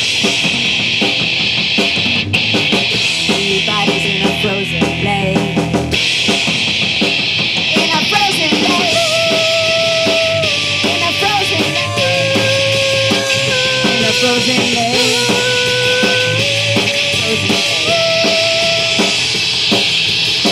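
Live rock band playing an instrumental break: distorted electric guitar, bass and a Pearl drum kit. From about eight seconds in, a lead line of long held notes that step and bend runs over the band until near the end.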